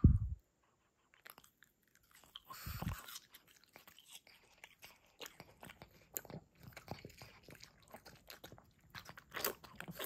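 A pug chewing fruit, a run of wet smacks and crunchy bites, with a lip-lick near the end. A loud low thump comes right at the start.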